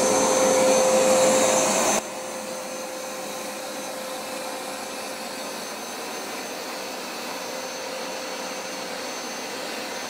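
Hoover SmartWash automatic carpet cleaner's motor running steadily with a held whine over a rush of suction, very loud. About two seconds in the whole sound drops suddenly to a much lower, steady level.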